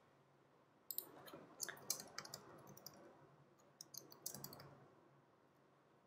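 Faint computer keyboard keys clicking in two short runs of typing, the second near the middle of the stretch.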